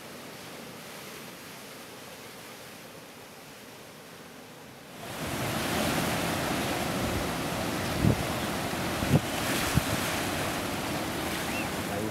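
Ocean surf breaking and washing up the beach, with wind rumbling on the microphone. The sound gets noticeably louder about five seconds in, and a few brief thumps come a little later.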